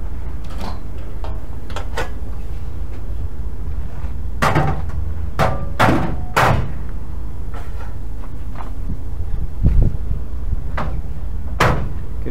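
Metal knocks and clanks from a curtainsider truck's side stakes and boards being handled, about eight of them spread a second or two apart, over a steady low rumble.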